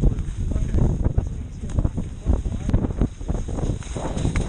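Skis, boots and poles clattering and scraping on wet snow in many irregular clicks and knocks, over a low wind rumble on the microphone.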